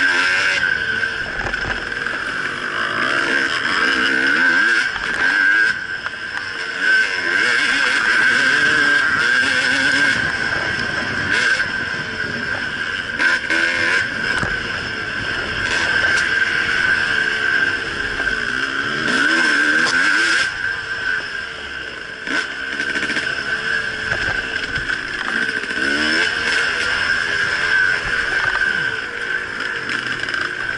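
2010 Husqvarna WR300 two-stroke enduro engine riding a bumpy dirt trail, its revs rising and falling through the corners, with a Suzuki RM250 two-stroke following close behind. Short knocks from the bike hitting bumps are mixed in.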